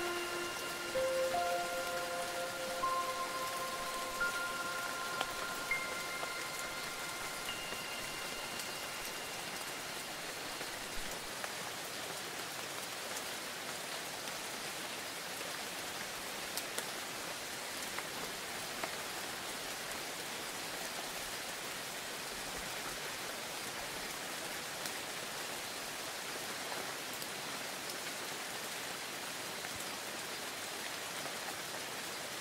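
Steady rain falling, a fairly even hiss with scattered drop ticks. Over the first ten seconds or so, a handful of chime-like tones at different pitches ring out one after another and slowly fade away.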